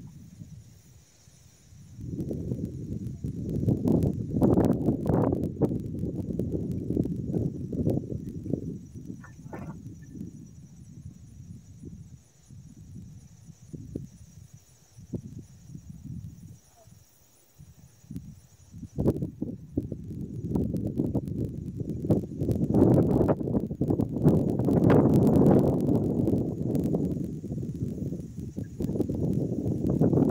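Outdoor wind buffeting a phone microphone: an uneven low rumble that swells and fades, quieter in the middle stretch and stronger near the end, with a few faint knocks.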